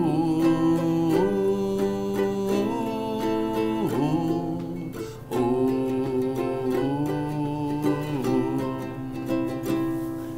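A man singing a wordless 'ooh' melody in long held notes that rise and fall, with short breaks about four and five seconds in, over a softly strummed acoustic stringed instrument.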